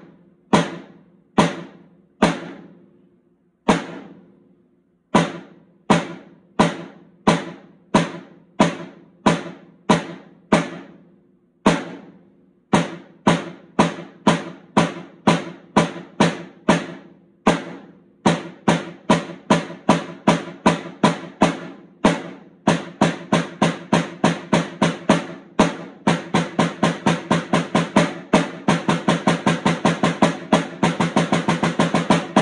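Rope-tension snare drum, a Loyal Drums Independence model, struck with wooden sticks, playing the ten-stroke roll rudiment from slow to fast. Slow, separate strokes at first, each with a short ring, speeding up steadily until the strokes run close together into a fast roll near the end.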